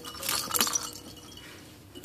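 Fabric rustling with a few light clinks as a baby car seat's plush cover and canopy are handled, busiest in the first second and then fading to faint room noise.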